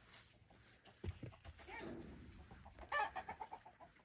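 Chickens clucking, with a quick run of clucks about three seconds in that is the loudest sound. A couple of low thumps come just after a second in.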